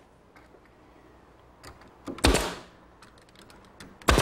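Pneumatic brad nailer firing brads into redwood slats: one sharp shot a little past halfway, another just as it ends, with faint ticks of handling between.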